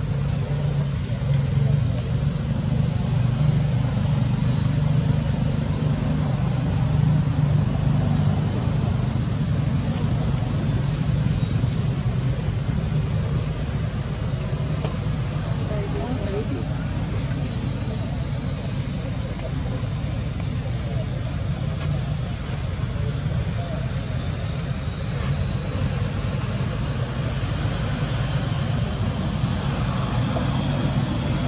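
Steady low background rumble, with faint thin high tones coming in near the end.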